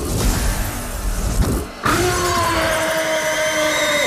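Cinematic shattering and crumbling sound effect over a low rumble, then, a little under halfway in, a held music chord starts suddenly and sustains steadily.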